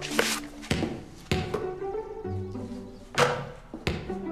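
A basketball bouncing on a wooden gym floor: three bounces about half a second apart, a pause, then two more near the end, over background music with held notes.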